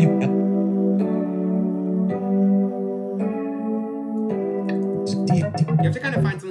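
Rhodes electric piano loop previewing in E minor: held chords that change about once a second in a steady pattern.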